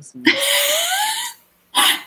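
A woman laughing: one long, breathy laugh that rises in pitch, then a short second burst of laughter near the end.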